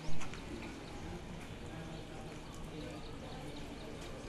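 Faint background voices of people talking over a steady low rumble of ambient noise, with a few light clicks; a short loud bump right at the start.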